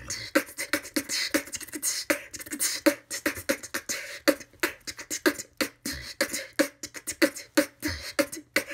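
A woman beatboxing with her lips held wide apart by a dental cheek retractor: a fast, steady run of mouth clicks, pops and hissing hi-hat strokes. With her lips held open she can't make a proper kick drum.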